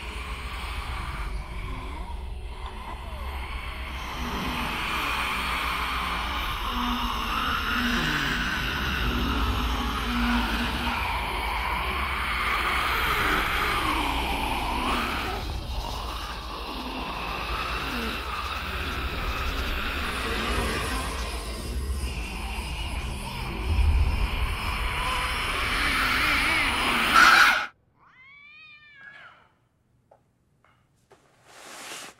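Eerie horror-film sound design: a wavering, wailing tone over a low rumble, growing louder and then cutting off suddenly near the end.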